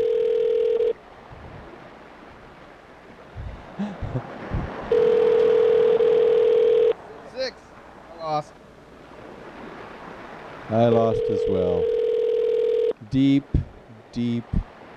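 Telephone ringback tone heard over the phone line: a steady tone that rings three times, about two seconds on and four seconds off, while the called phone goes unanswered.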